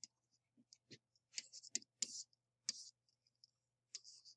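Faint stylus taps and short scratchy strokes on a writing surface as brackets and numbers are handwritten: a string of irregular clicks, the sharpest near the middle.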